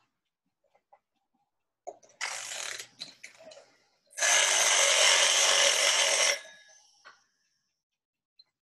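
Rustling noise close up on a microphone: a shorter burst about two seconds in, then a louder, steady rustle lasting about two seconds from about four seconds in.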